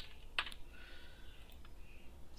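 A few computer keyboard keystrokes, the clearest about half a second in.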